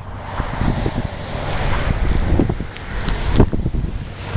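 Wind buffeting the camera microphone outdoors: a loud low rumble with irregular thumps.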